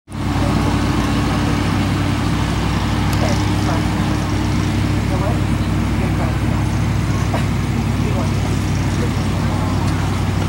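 A steady, loud low engine hum from a motor running close by, with faint voices in the background.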